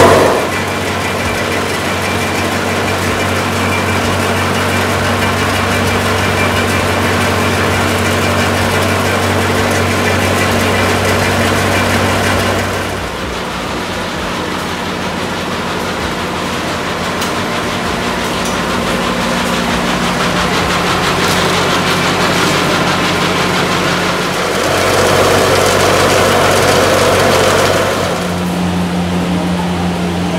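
Cashew-processing machinery running with a steady motor hum and mechanical noise. The hum's pitch and level change abruptly a few times in the middle and near the end.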